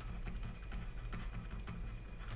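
Faint, irregular light clicks and scratches of a stylus on a pen tablet as a word is handwritten.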